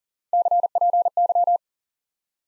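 Morse code sent as a single steady keyed tone at 40 words per minute, spelling CPY, the ham-radio abbreviation for "copy". The three letters come as three quick clusters of dots and dashes, starting a moment in and lasting just over a second.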